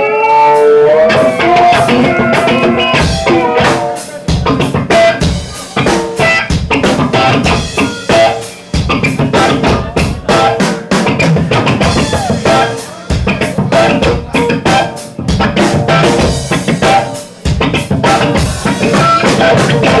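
Live noise-rock band playing loud and fast: rapid drum kit hits under electric guitar, breaking off briefly about every four to five seconds.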